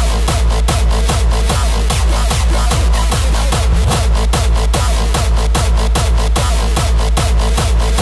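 Hardstyle dance music playing loud: a kick drum on every beat, each kick falling in pitch, about two and a half beats a second, with high percussion over it.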